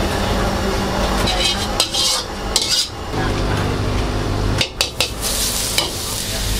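A metal ladle clinks and scrapes against a steel wok several times over a steady low hum. Near the end, beaten egg hits the hot oil and sizzles.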